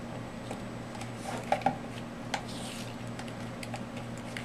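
Small plastic clicks and light handling noise as a multi-pin plastic wire connector is pushed together, with a close pair of clicks about a second and a half in. A steady low hum runs underneath.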